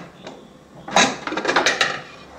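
A metal pressure cooker lid being worked open and lifted off: a knock about a second in, then a quick run of metal clicks and rattles.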